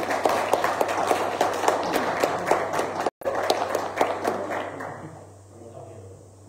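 Applause: many people clapping in a large room, with a brief audio dropout just past halfway, the clapping dying away about five seconds in.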